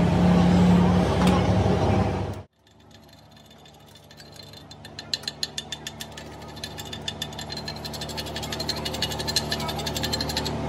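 Loud steady welding noise that cuts off abruptly about two seconds in. After a quiet moment, a chipping hammer taps rapidly on the fresh weld bead of a steel drive shaft, knocking off slag. The taps come as several light metallic ticks a second, over a low machine hum.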